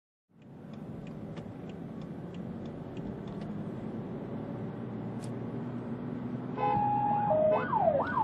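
Steady road and engine noise inside a police car at speed, then about six and a half seconds in a police siren starts: a steady two-tone note that steps down and back up, switching near the end to quick rising-and-falling sweeps.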